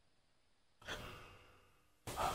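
Near silence, broken about a second in by a single short, breathy sigh-like exhale that fades away within about half a second.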